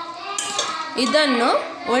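Metal ladle stirring and scooping cooked horse gram in an aluminium pot, clinking against the pot's sides, with a woman's voice in the second half.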